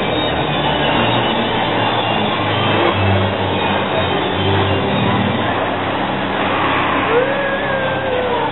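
Arrow suspended roller coaster train running along its track, a loud continuous rumble of wheels and track noise, with a brief wavering high tone near the end.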